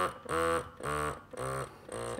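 Medela Freestyle Flex portable breast pump motor running in stimulation mode, pulsing in a fast even rhythm of about two short hums a second. It has nothing plugged in, so it sounds louder than it does in use.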